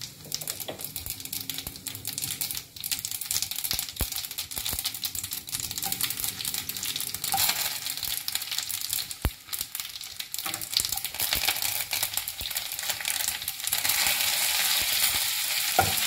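Cumin seeds, garlic cloves and curry leaves sizzling and crackling in hot oil for a tempering, with sharp spits and a spatula stirring at times. The sizzle grows louder and steadier in the last two seconds.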